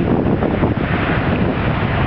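Wind blowing across the microphone: a loud, steady rush of noise.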